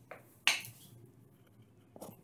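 One sharp metallic clink about half a second in, with a brief ring after it, as a cordless drill is handled; otherwise quiet room tone.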